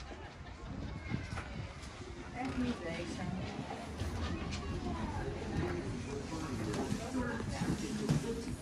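Indistinct chatter of several people's voices, with no clear words, over low background noise.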